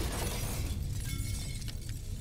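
Glass shattering, with shards clattering down in a continuous high-pitched spill of breaking glass.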